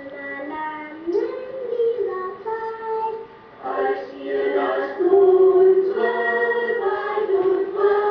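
A group of young children singing a slow song together in unison, holding each note for about a second, with brief pauses between phrases.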